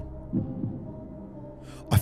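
A low steady hum with a brief, soft low murmur about a third of a second in, like a thinking "hmm" from a man.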